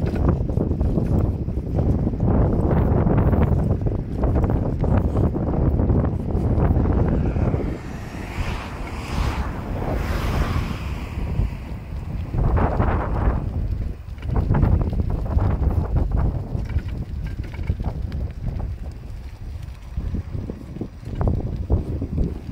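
Wind buffeting a phone's microphone while riding a bicycle: a heavy, uneven low rumble. About eight seconds in, a hiss swells up and fades away over roughly three seconds.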